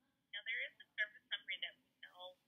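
A customer service representative's voice on a phone call, thin and narrow as heard through the phone line, starting about a third of a second in.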